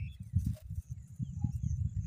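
Irregular low rumbling and thumping, with faint, short, high bird chirps over it.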